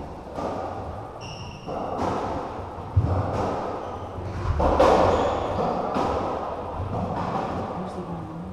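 Racketball ball being struck by a racket and knocking off the court walls and floor, sharp hollow impacts with the loudest about three seconds in, over indistinct voices.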